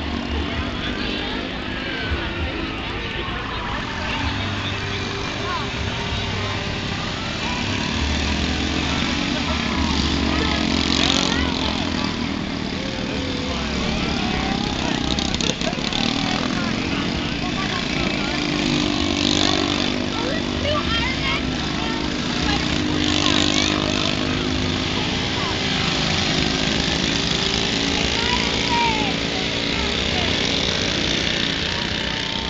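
Several small mini bike engines running past together, their pitch rising and falling as the riders throttle up and down.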